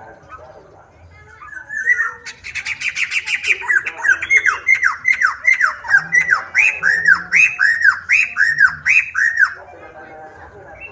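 Caged black-throated laughingthrush (poksai hitam) singing a loud series of repeated slurred whistled notes. The notes start about two seconds in as a rapid run, then slow to about two arched notes a second, and stop just before the end.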